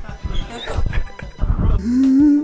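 Short non-word vocal sounds from people, such as grunts or exclamations, over background music.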